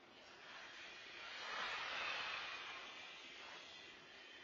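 A group of people blowing out hard together: a soft, breathy rush of air that swells to a peak about two seconds in and then fades away.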